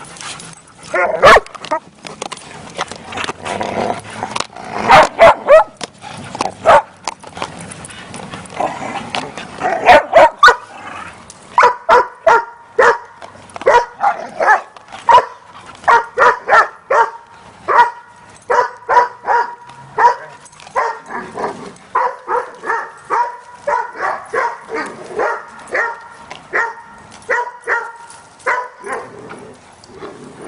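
Dogs barking in play: scattered barks and scuffling for the first ten seconds or so, then a dog barks over and over, about two barks a second.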